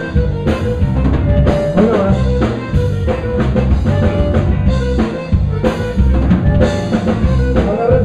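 Live Tejano band playing, with drum kit and congas keeping a busy, steady beat under electric bass and button accordion.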